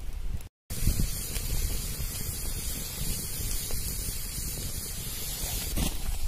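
A steady hiss with a low rumble underneath, broken by a split-second silence about half a second in.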